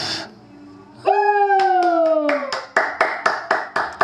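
A few people clapping in an even beat, about four claps a second, starting about a second and a half in. Over the start of the clapping comes one long pitched call that slowly falls in pitch, just after a breathy sigh.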